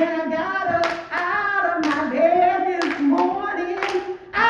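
A woman singing a gospel song solo into a microphone, with steady hand claps keeping time about once a second.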